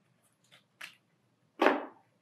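A lipstick tube and its small packaging being handled as it is put away: two faint clicks, then a louder brief knock about one and a half seconds in.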